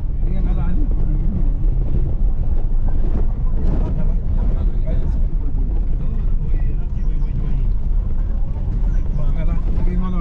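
Car engine and tyre rumble on a rough dirt road, heard from inside the vehicle, steady throughout. Voices come and go over the rumble.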